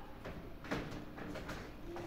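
Quiet room with a few soft clicks and taps at a computer as a presentation slide is advanced, and a faint low hum in the second half.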